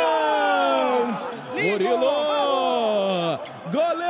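Men shouting in celebration after a futsal goal: long, drawn-out yells that fall in pitch, with several voices overlapping.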